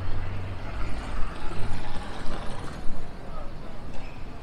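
City street traffic: a motor vehicle's low rumble, strongest in the first second and then easing, over indistinct talk of passers-by.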